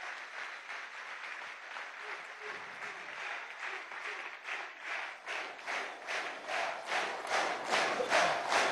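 Audience applauding, the scattered clapping turning into rhythmic clapping in unison about halfway through.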